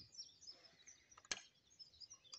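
Near silence outdoors: a few faint bird chirps, and one sharp click a little over a second in.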